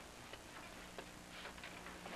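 Faint, irregular clicks and small ticks in a quiet room, about a second apart and then a short cluster of them near the end, over a low steady hum.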